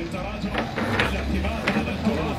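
A few light, sharp clicks and clinks from a metal teapot being handled on a tray, with voices talking in the background.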